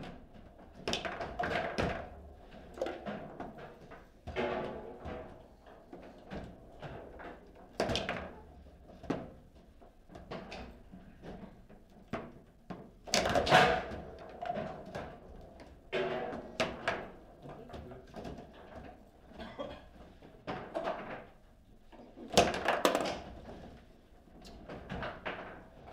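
Table football play: the ball knocked by the figures and against the table walls, and the rods jolting, in irregular runs of sharp knocks. The loudest flurries come about thirteen seconds in and again near the end.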